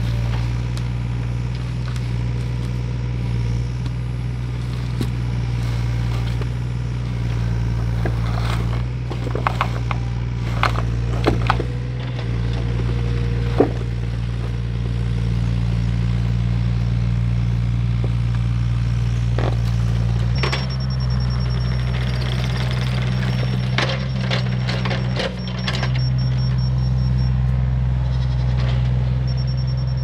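Tractor engine running steadily, with scattered knocks and scrapes from the work. About twenty seconds in, the engine note changes and a thin high whine comes in.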